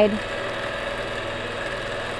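Longarm quilting machine running steadily as it stitches free-motion, a rapid even needle rhythm under a constant motor hum.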